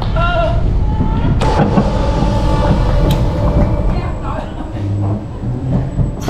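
Vekoma Family Boomerang roller coaster train rolling into the station and slowing to a stop: a steady low rumble of the wheels on the track, with a steady whine for a couple of seconds and a sharp click about three seconds in.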